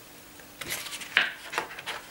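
Glossy photobook page being turned by hand: paper sliding and rustling, a few quick swishes from about a third of the way in, the loudest just past halfway.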